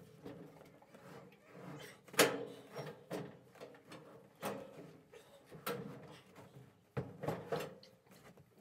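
Washing machine being shifted down a staircase: a series of separate knocks and bumps as its metal cabinet is tipped and set down, the loudest about two seconds in and several lighter ones after.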